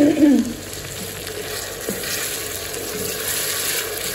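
Chopped tomatoes, green chillies and golden-fried onions sizzling in hot oil in a steel pot, stirred with a wooden spoon. The hiss grows stronger over the last two seconds, with one light knock about two seconds in.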